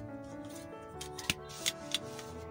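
Soft piano background music, with three sharp plastic clicks in the second half as a clear plastic set square is shifted and set down against a T-square on the drawing board.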